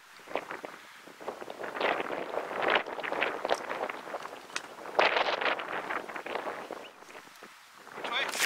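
Footsteps crunching and scuffing irregularly on dry, gravelly ground, with brittle mesquite branches crackling and rustling as a person pushes through the brush.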